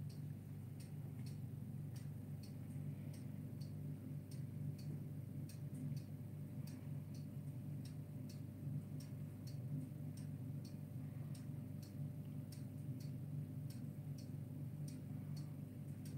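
Faint regular ticking, about two ticks a second, over a low steady hum.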